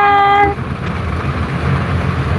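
A voice holding a steady note stops about half a second in, leaving the steady low rumble of a passenger van's cabin while the van is moving on the road.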